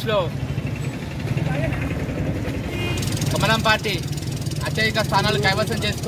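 A man speaking in Telugu-Hindi political address, with a pause of about three seconds at the start before talking resumes; a steady low hum runs underneath throughout.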